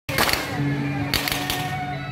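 Traditional temple-procession music: steady held notes from wind instruments, with two clusters of sharp percussive cracks, one near the start and one about a second in.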